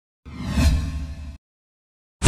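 A whoosh sound effect for an animated logo intro, lasting about a second: it swells and then cuts off abruptly.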